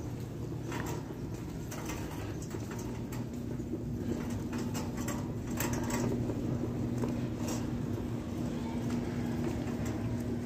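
Shopping cart being pushed across a hard store floor, its wheels rattling with irregular clicks and knocks over a steady low hum.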